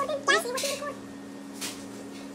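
A high-pitched, wavering call in the first second, rising and falling in pitch, over a steady low electrical hum, followed by a brief scuff about one and a half seconds in.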